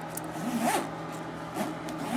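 Zipper on a black fabric shoulder bag being pulled open by hand: one longer zip whose pitch rises and falls with the speed of the pull, then a short second zip near the end.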